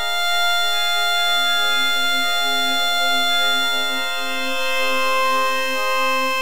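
Electronic drone music: a held chord of steady sustained tones, with a higher tone swelling in about two-thirds of the way through.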